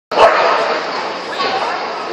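Crowd of voices chattering in the arena, with a dog barking.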